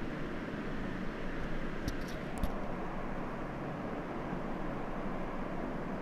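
Steady background hiss and hum, with a few light clicks about two seconds in from dried fruit and nuts being dropped into a plastic jar.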